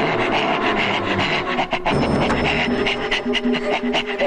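Loud stage music for a dance performance: held tones with repeated percussion strikes.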